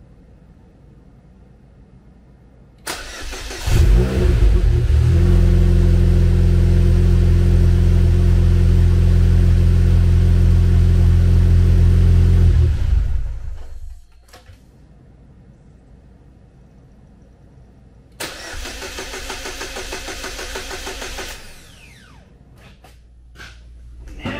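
Supercharged four-cylinder engine of a Chevy Cobalt SS cranks about three seconds in, catches and runs steadily for about nine seconds, then stops. About eighteen seconds in it is cranked again for about three seconds without starting. This is the car's ongoing starting problem, which the owner hopes is a failing crank sensor.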